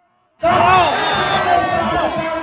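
Silent at first, then about half a second in a crowd of spectators breaks into loud shouting, whooping and cheering, many voices rising and falling at once. It is a reaction to the ball landing on the sand for a point.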